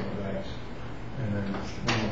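A man's voice speaking indistinctly, with one sharp knock near the end.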